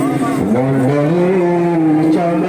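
Devotional chanting sung in long held notes that slide from one pitch to the next, with a shift in pitch about half a second in.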